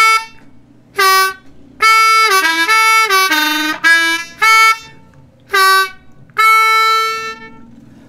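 Diatonic harmonica in D played blues-style on the draw notes of holes 1 and 2, with whole-step bends on the 2 draw: a few short separate notes, a quicker run of bent notes in the middle, and a long held note at the end.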